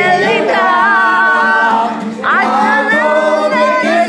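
A group of voices singing together in long held notes, with a short break about halfway through before the singing swells up again.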